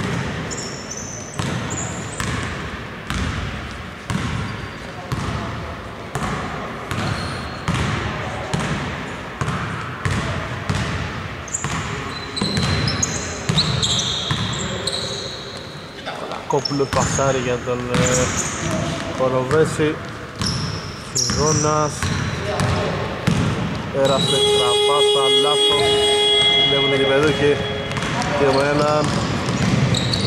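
Basketball dribbled on a hardwood gym floor, the bounces coming steadily about once a second, with sneakers squeaking in short high chirps. In the second half players' voices call out over the play, and later a single held tone with several pitches sounds for about three seconds.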